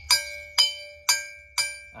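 A hanging metal plate beaten with a rod as a gong: four evenly spaced strikes, about two a second, each ringing on clearly. It is a call signal, struck to summon pupils.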